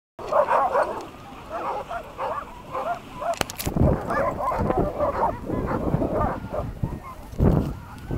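A pack of sled dogs barking and yipping excitedly, many short high calls overlapping without a break. A few low thumps on the microphone come about three and a half seconds in and near the end.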